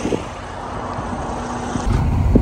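Freightliner semi truck's diesel engine idling with a steady low hum under outdoor background noise. Just before the end it cuts to the louder rumble of the truck on the road.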